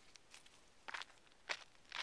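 Footsteps on a granite rock slab: a few faint, gritty scuffs of shoe soles on the rock, the louder ones about a second in and near the end.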